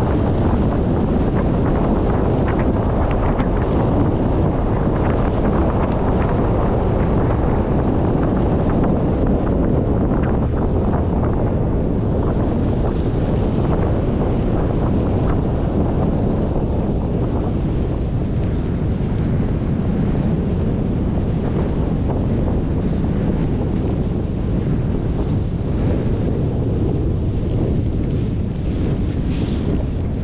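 Steady, loud wind buffeting the camera microphone as a skier moves downhill on a selfie-stick camera.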